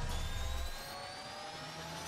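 Sci-fi intro sound effect: a whirring riser whose tones climb slowly in pitch, over a low rumble that dies away about two-thirds of a second in.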